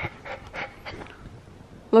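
A dog panting in quick, even breaths, about five a second, dying away after a second or so.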